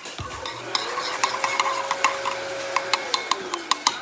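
A spoon stirring a slime mixture in a bowl, with irregular clinks and taps of the spoon against the bowl. A faint held tone runs through the middle and slides down in pitch near the end.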